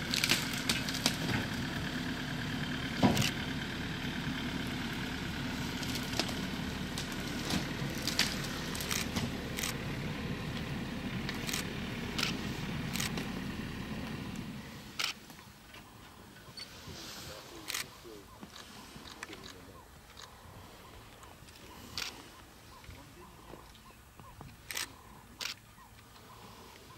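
A vehicle engine idling steadily, which cuts off about halfway through. After that it is much quieter, with scattered sharp clicks throughout.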